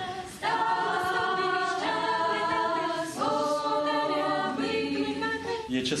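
A small group of voices singing a Ukrainian Christmas carol (koliadka) unaccompanied, in long held notes. One phrase starts about half a second in and another just after three seconds.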